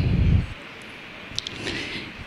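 A pause in speech: a short low rumble on a handheld microphone at the start, then steady faint hiss of the room and the microphone, with a faint click about halfway through.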